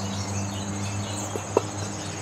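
Steady low hum with a steady high trill over it, and one sharp click about one and a half seconds in.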